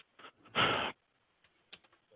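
Typing on a computer keyboard picked up by a call participant's microphone: a short burst of noise about half a second in, then a few faint clicks.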